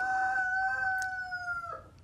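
A rooster crowing: one long call held at an even pitch for nearly two seconds, dipping slightly at the end.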